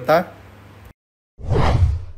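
Whoosh transition sound effect for a news-segment graphic: a quick swelling rush that comes in about one and a half seconds in, after a short silence, and fades away.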